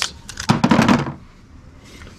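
A brief clatter and knocking of objects being handled on a table, about half a second long, starting about half a second in, as small items are put down and a wooden box is picked up.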